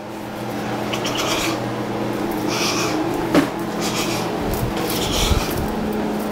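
Six-week-old blue nose pit bull puppies growling and scuffling in a tug-of-war game, in irregular bursts with a sharp click about halfway through, over a steady low hum.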